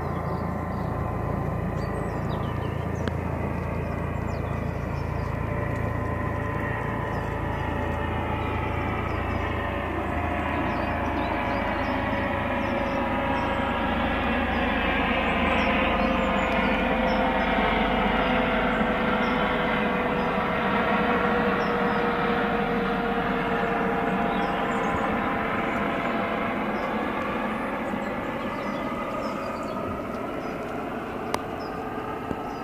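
Steady mechanical rumble of a passing vehicle that swells to its loudest about halfway through and then eases, with several tones slowly falling in pitch as it goes by.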